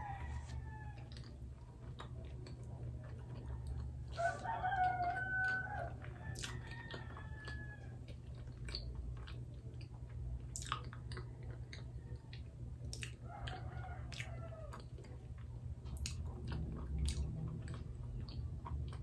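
A rooster crowing twice, one long call about four seconds in and another around thirteen seconds, over soft chewing and mouth clicks of someone eating sticky rice cakes, with a steady low hum underneath.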